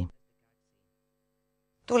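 Near silence with a faint steady hum. A narrating voice breaks off at the start, and a woman starts speaking near the end.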